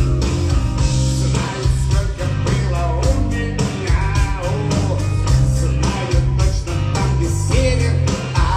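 Loud live rock-style music through a club PA, with a heavy steady bass line and drums, and a man singing into a handheld microphone, his voice coming through clearly from about halfway in.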